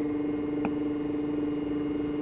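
A steady hum, holding one pitch, with a single faint click a little past half a second in.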